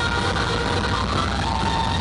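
Live heavy metal band playing loud: distorted electric guitar held over drums and bass, heard from the audience.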